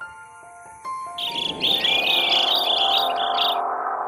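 Background music of sustained notes, joined about a second in by a quick run of high bird chirps that stops shortly before the end.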